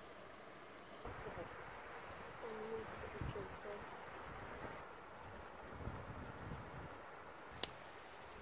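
Faint outdoor background hiss, a little louder from about a second in, with a few brief faint pitched calls about two and a half to four seconds in and one sharp click near the end.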